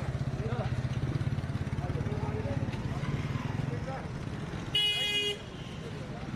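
A vehicle engine idles close by in queued traffic, a steady low pulsing hum. About five seconds in, a vehicle horn honks once, briefly, the loudest sound here. Voices murmur faintly beneath.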